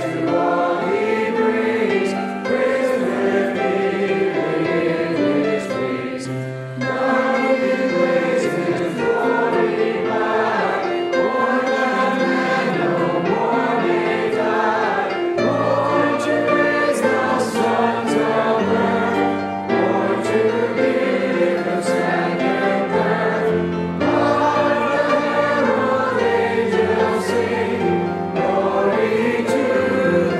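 A church congregation of men, women and children singing a Christmas hymn together. The singing runs in phrases, with short breaks at about 6 s, 20 s and 24 s.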